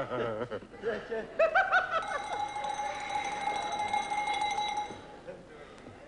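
A few seconds of voices and laughter, then one long steady note on a brass horn, held about three seconds before it stops.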